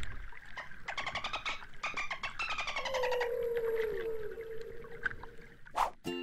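Whale and dolphin sound effect under water: a rapid train of clicks, then a long call that slides slowly down in pitch. A short swoosh comes just before the end.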